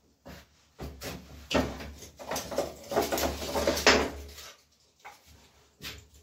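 Dry firewood sticks and bark being rummaged through and picked up from a pile: an irregular clatter and scraping of wood, with a sharp knock near the end.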